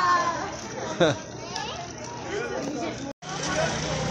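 Children and adults talking and calling out in the open, with a short loud sound that falls in pitch about a second in. The sound cuts out briefly near the end, and a low steady hum follows.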